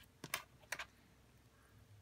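A few light clicks as a metal spring bar tool and a watch are handled during a strap change: two quick pairs of ticks in the first second.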